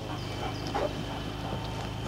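Search-and-rescue dog heard faintly, with a few short, quiet sounds, the clearest a little under a second in, over a steady low hum.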